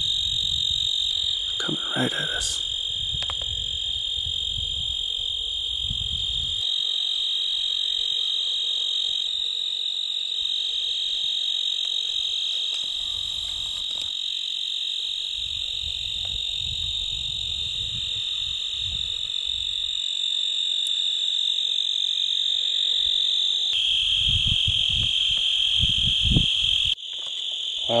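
Steady, high-pitched chorus of crickets and other insects chirring in the sagebrush. Gusts of low rumble from wind on the microphone come and go.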